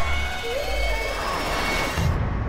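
Film-trailer sound-effects mix: a low rumble and rushing noise, with a brief vocal sound about half a second to a second in.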